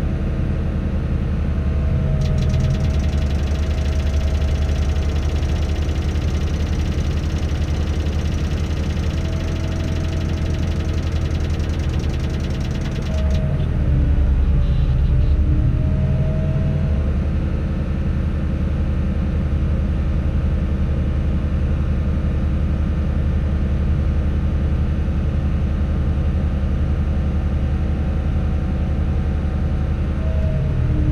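A Tadano all-terrain crane's diesel engine running steadily, heard from inside the operator's cab, its pitch dipping and rising a little as the hoist is worked to lower a load. A fine, fast ticking runs through the first half and stops about 13 seconds in, where the engine gets slightly louder.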